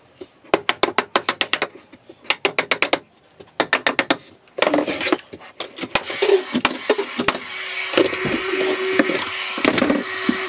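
Ratchet spanner clicking in quick runs as a bolt is tightened, then a longer continuous rasping with a steady squeal in the second half.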